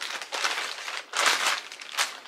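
Clear plastic shipping bag crinkling as a sneaker is pulled out of it, in two bursts of rustling.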